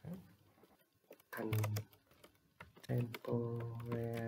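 Typing on a computer keyboard, a run of sharp key clicks. A man's voice sounds briefly about a second and a half in, then holds a long, level, drawn-out tone from about three seconds in, louder than the clicks.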